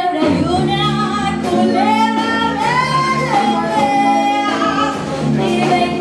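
Live cumbia-jazz band playing: a female vocal line of long held, sliding notes over electric bass, guitar and drums.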